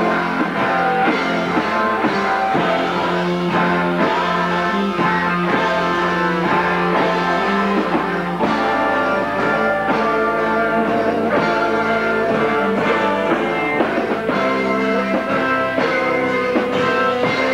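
A rock band playing live, with electric guitars, bass and a drum kit in a steady beat; the singer is not singing in this stretch.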